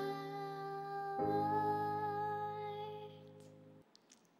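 A child's voice holding the final sung note of a song over sustained backing chords that change about a second in; the music cuts off sharply near the end.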